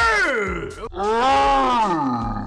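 A man yelling twice, two long loud cries that each rise and then fall in pitch: an outburst of shocked excitement at a winning card on the river.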